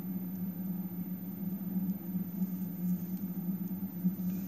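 A steady low hum, with a few faint light ticks of a needle and glass seed beads being handled during bead-weaving.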